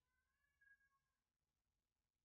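Near silence, with a very faint, steady high tone that fades out about a second in.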